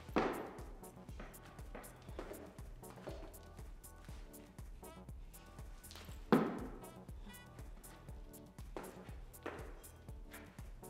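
Background music with a steady beat, broken by two loud thuds of feet landing on a wooden plyo box, about six seconds apart, with a few softer knocks between them.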